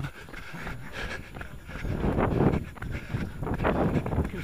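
A runner's breathing close to the microphone, two heavy breaths about two and three and a half seconds in.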